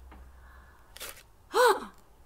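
A woman's breathy gasp about a second in, followed near the end by a short exclaimed 'ooh' of surprise whose pitch rises and then falls.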